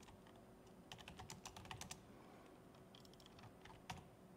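Faint laptop keyboard typing: a quick run of keystrokes about a second in, a few more near the end, then one sharper tap.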